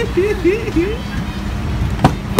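A car engine idling with a steady hum, and a person's voice giving three or four short rising calls in the first second.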